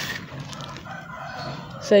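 Hardened gritty cement crunching as a hand digs into and crumbles it in a plastic tub, with a short gritty rustle at the start. A faint drawn-out bird call sounds in the background.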